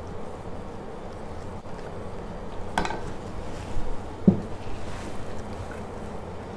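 A wooden spatula stirring a thick milk-and-potato mixture in a stainless steel pot, over a steady low background rumble, with a sharp click about three seconds in and a duller knock a little later.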